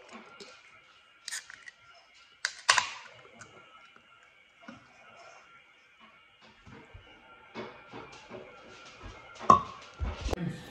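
Aluminium energy-drink can cracked open by its pull tab about two and a half seconds in, a sharp snap followed by a short fizz. Near the end the can is set down on a stone countertop with a loud knock.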